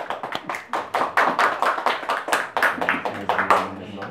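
A small audience applauding: many overlapping hand claps, starting at once and stopping just before the end.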